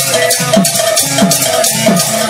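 Sambalpuri kirtan ensemble music. A drum's strokes bend down in pitch about twice a second, small hand cymbals strike rapidly on the beat, and a steady melody note is held above them.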